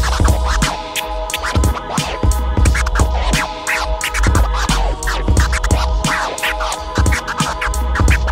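Vinyl record scratched by hand on a Technics turntable over a hip-hop beat: quick back-and-forth pitch sweeps, several a second, cut short by the mixer fader, over a steady heavy bass.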